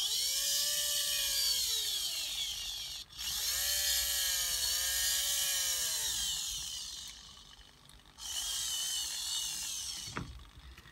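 InMoov robot's shoulder servo driving the right arm in three movements, a geared electric-motor whine whose pitch rises and falls as each movement speeds up and slows. The arm is being run through its range after the servo's potentiometer was adjusted.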